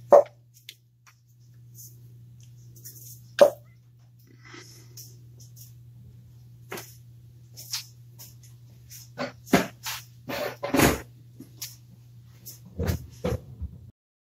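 Ignition coils being pulled off the spark plugs of an Ecotec four-cylinder: two sharp pops about three seconds apart as the rubber boots come free, then light clicks and a burst of plastic-and-metal clatter as the coils are handled and set down. A faint steady low hum runs underneath.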